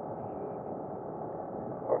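Motorcycle riding at steady speed: a constant mix of engine running and wind rush, with no change through the stretch.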